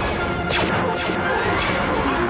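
Film action soundtrack: music under crashing sound effects, with a sharp impact about half a second in and sliding tones throughout.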